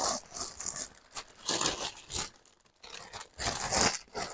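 A plastic mailer bag being crinkled and torn open by hand, in three short bursts of rustling and tearing.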